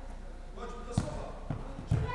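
A football being kicked and bouncing in an indoor hall: three dull thumps, about a second in, half a second later and near the end, the first and last the loudest.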